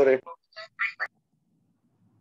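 A person's voice coming through an online video call: the tail of a word, then a few short clipped syllables, stopping about halfway through.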